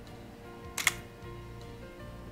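A camera shutter firing once: a short, sharp click a little under a second in, as a photo is taken. Quiet background music plays under it.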